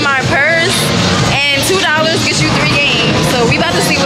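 A woman's voice talking over background music.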